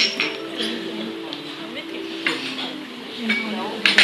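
Light clinks over steady background music and voices.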